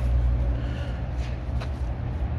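A steady low rumble, with a couple of faint ticks about a second and a half in.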